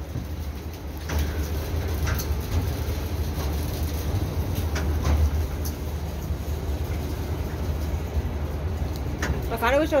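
Steady low rumble inside a moving Ferris wheel gondola, with a few faint clicks and knocks.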